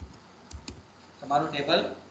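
A few keystrokes on a computer keyboard as a command is typed and entered, then a man's voice speaks briefly about a second and a half in.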